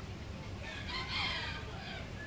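A bird calling once, a single call of a little over a second about halfway through.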